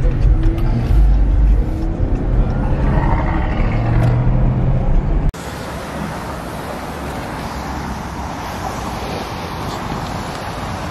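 Low, steady rumble of a car's engine and tyres heard from inside the cabin while driving. About five seconds in it cuts off abruptly, leaving a steady hiss.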